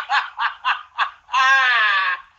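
A man laughing hard: a quick run of short laughs, then a long high-pitched squealing laugh about a second and a half in.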